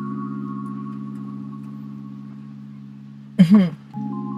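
Background music of steady held chords that change just before the start and fade slowly. Near the end the woman gives one short, loud throaty "mm".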